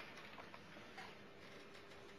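Near silence in a lecture hall, with a few faint ticks and clicks and a faint steady hum in the second half.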